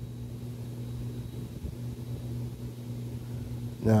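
Steady low background hum with a constant pitch and a second hum an octave above it.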